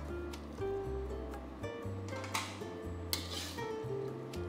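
Soft background music with a plucked guitar melody over a steady bass. In the second half come a few faint scrapes of a metal spatula tossing food in a wok.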